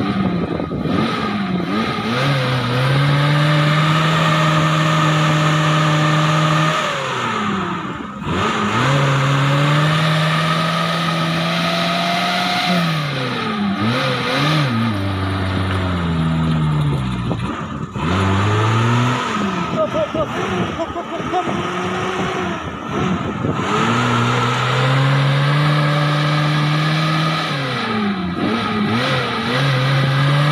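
Small Suzuki Jimny 4x4's engine revving hard in long held pulls, the revs dropping off and climbing again every few seconds, as it works its wheels through deep mud.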